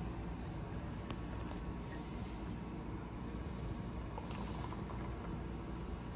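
Beer poured from a can into a tilted glass: a faint, steady pour and fizz of foam.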